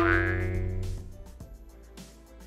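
A cartoon-style sound effect for a pop-up graphic: one sudden pitched hit that rings and fades away over about a second, over quiet background music.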